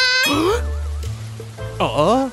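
Background music with a repeating bass line, overlaid with short cartoon-style sound effects: a warbling tone about half a second in and a quick falling slide near the end.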